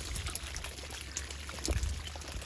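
Wet, trickling rustle of a heap of live small catfish (gulsa tengra) squirming in a basket as a hand picks through them, with a soft thump near the end.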